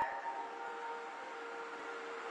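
Quiet pause in a recorded talk: faint hiss with a faint, steady hum-like tone.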